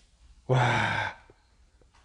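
A man's breathy, drawn-out exclamation of "wah" (wow), about half a second long and starting half a second in, its pitch falling slightly; otherwise faint room tone.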